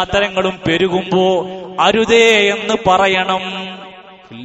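A man's voice chanting a religious recitation in a melodic, drawn-out style, with gliding and long-held notes.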